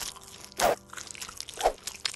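Crunching bite sound effects: one sharp crunch about half a second in and two more close together near the end, a cartoonish chomping that stands for someone being eaten.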